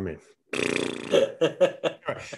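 A man laughing heartily: one long drawn-out laugh, then a quick run of short laughing bursts.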